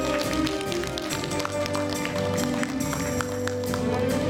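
Enka karaoke backing track playing an instrumental passage of held, melodic tones, with scattered sharp taps or claps over it.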